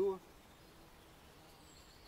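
Faint outdoor ambience after the end of a spoken word, with one brief, thin, high chirp near the end, likely a small bird.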